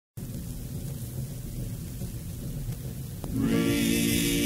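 Vinyl record playing its lead-in groove: low rumble and surface noise, a single click just after three seconds, then the song's opening music begins near the end.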